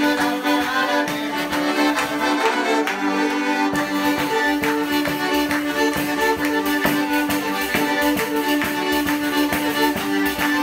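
Calabrian tarantella played live on a lira calabrese (bowed folk fiddle) and an organetto (diatonic button accordion), with a steady drone note underneath and a fast, even beat.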